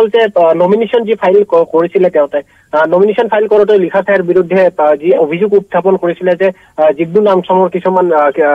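Speech only: one person talking steadily in Assamese over a telephone line, with the thin, narrow sound of a phone call.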